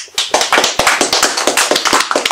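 A small group of people applauding: close, quick hand claps that start suddenly.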